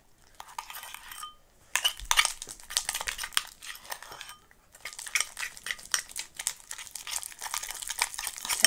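A metal spoon stirring sticky slime in a metal bowl: irregular clinks and scrapes of the spoon against the bowl, coming in short runs with brief pauses.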